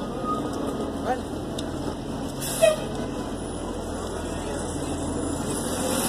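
Busy city street ambience on a crowded sidewalk: a steady wash of traffic noise with scattered voices of passers-by, and a brief louder sound about two and a half seconds in.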